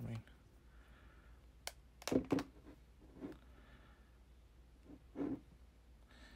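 Two smartphones, a stainless-steel-framed iPhone 12 Pro and an iPhone XR, handled and laid back to back: a sharp click about two seconds in and a few soft knocks and rustles, with short murmured vocal sounds.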